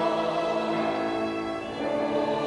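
A woman and a man singing a sacred song together, holding long sustained notes.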